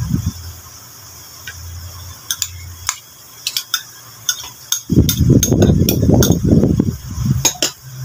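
Metal spoon clinking against a ceramic bowl while sliced cucumber is tipped in and mixed into raw fish, in a string of sharp clicks; about five seconds in there is a louder stretch of low handling noise.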